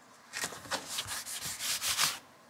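Fingers rubbing a sticky note down onto a plastic moving box: a run of quick scuffing strokes starting about a third of a second in.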